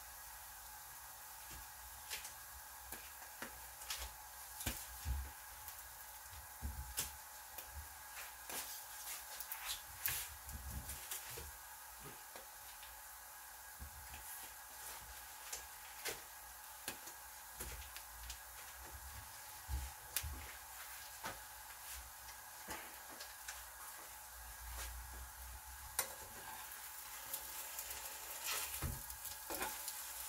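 Egg-coated toast frying in a nonstick pan: a steady, fairly faint sizzle with scattered small crackles and pops.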